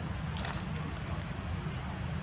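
Steady wind rumble on the microphone, with a brief rustle about half a second in.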